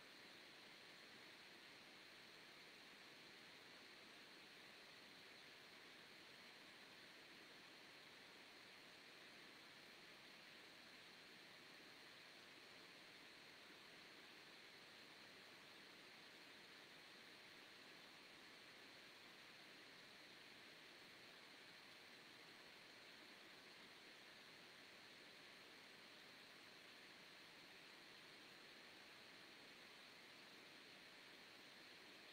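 Near silence: a steady faint hiss of background noise, with no distinct sounds.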